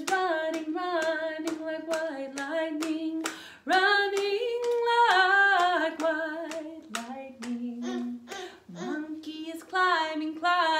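A woman singing a children's song in a clear melody, with hands clapping a steady beat of about two to three claps a second under the singing.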